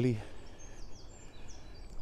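Faint birds chirping: a few short, high calls that slide down in pitch, over a steady low outdoor rumble.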